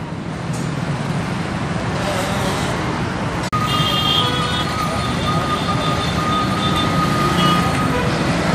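Street traffic of motorcycles, scooters and cars, heard as a steady hum of engines and road noise. The sound cuts out for an instant about three and a half seconds in, and after that a steady high-pitched whine runs along with the traffic.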